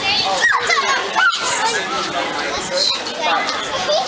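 Children chattering and calling out, high-pitched voices overlapping.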